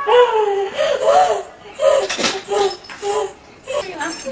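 A woman's high-pitched wordless cries, rising and falling in short broken sounds, with a sharp knock or two about two seconds in.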